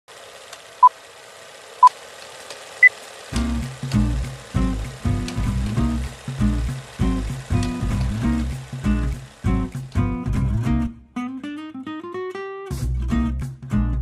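Film-countdown intro: steady hiss with faint clicks and three short beeps about a second apart, the third one higher. Then intro music with a steady pulsing beat begins, with a rising sweep near the end before the beat returns.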